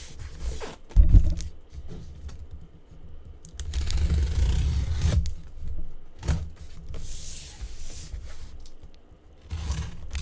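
Cardboard shipping case being handled and slid on a table: a heavy thump about a second in, then cardboard scraping and rubbing, loudest around four to five seconds in, with another knock a little after six seconds.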